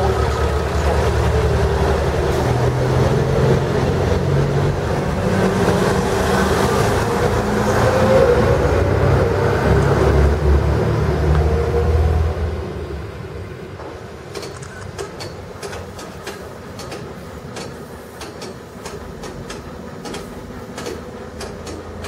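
FS ALn 663 diesel railcar pulling away, its diesel engine running loud with a rising note for about twelve seconds. Then the sound drops off sharply as the railcar moves away and goes on quieter, with a run of light clicks through the last several seconds.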